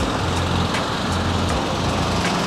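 Road traffic noise: a steady low engine rumble from motor vehicles, with faint regular ticks about two to three times a second.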